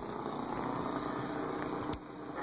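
Steady radio static from a 1941 Howard 435A receiver tuned between stations, played through an amplifier speaker.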